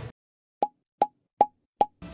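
Four short, pitched pops at an even beat over dead silence: an edited-in cartoon 'plop' sound effect.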